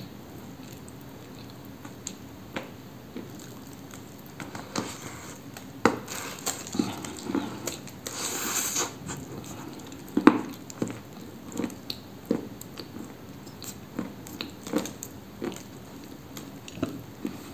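A person biting and chewing a dried cookie made of Cambrian clay: crisp crunches and clicks scattered throughout, the sharpest about six and ten seconds in, with a short hiss a little past halfway.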